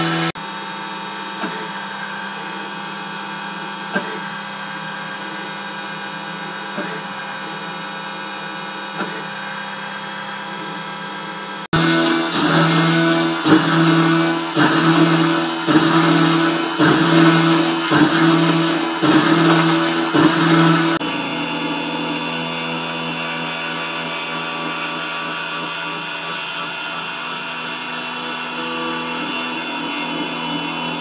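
Spindle of a CNC-converted Titan TM20LV benchtop milling machine running with an end mill cutting aluminium, a steady machine tone. The sound changes abruptly twice. About a third of the way in it turns louder and swells and fades about once a second for some nine seconds, then settles to a steadier, quieter cut.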